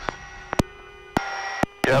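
Helicopter crew intercom audio in an S-64F Skycrane: a steady hum of several fixed tones, broken by sharp clicks, with a pilot starting to speak just before the end.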